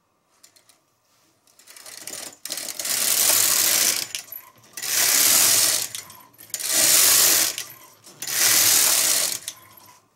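Knitting machine carriage pushed back and forth across the metal needle bed, knitting four rows: four passes of about a second and a half each, with short pauses between.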